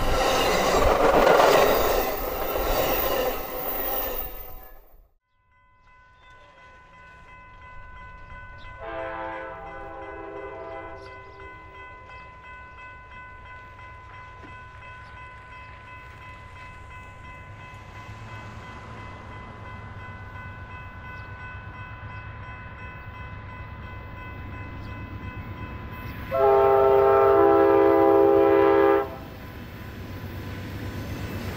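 Amtrak Superliner passenger cars rolling past with rumble and wheel clatter, cut off suddenly about five seconds in. An approaching Amtrak diesel-led passenger train then sounds its multi-note chord horn, once faintly in the distance and once loudly for about three seconds near the end, over a low engine rumble.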